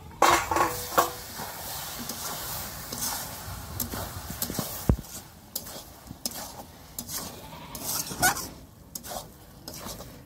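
A metal spatula stirs and scrapes pork pieces around a steel kadai, with the steady sizzle of the meat frying in its masala. A few sharp metallic clanks ring out in the first second.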